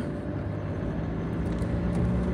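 Steady road and engine noise of a moving car heard from inside the cabin: an even low hum with tyre noise.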